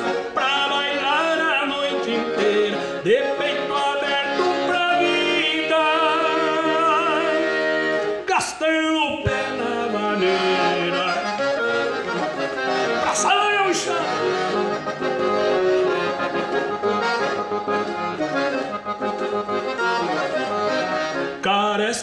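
Piano accordion playing an instrumental break in a lively gaúcho vaneira, with quick melodic runs and a warbling trill about six seconds in.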